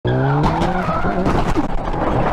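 Motorcycle crash. The engine's steady note is broken off about half a second in by a sudden impact, followed by scraping and skidding as the bike slides along the road surface, with scattered knocks from debris.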